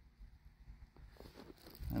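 Faint outdoor background with a low rumble and a few soft ticks, then a man's voice starting at the very end.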